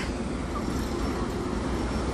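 Steady road traffic noise from a busy city street, with cars and buses running by.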